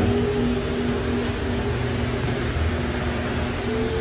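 A steady droning hum with an even hiss underneath, holding one level throughout.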